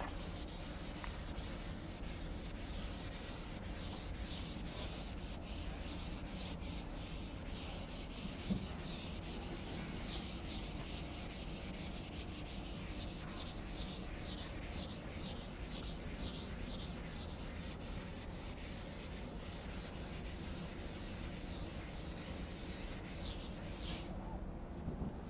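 Blackboard duster wiping chalk off a chalkboard in quick back-and-forth strokes, a dry rubbing hiss, with one soft knock about eight seconds in; the wiping stops just before the end.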